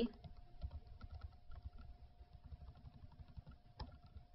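Faint computer keyboard typing: irregular light key taps, with a sharper click near the end, over a faint steady hum.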